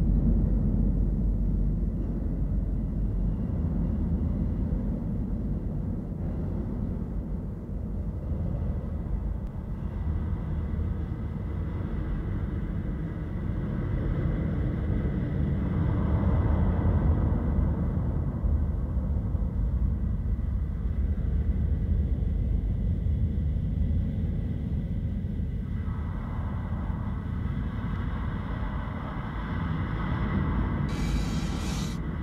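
A steady low rumbling drone with a faint high steady tone above it, swelling slowly twice in the second half: an underwater ambience soundtrack.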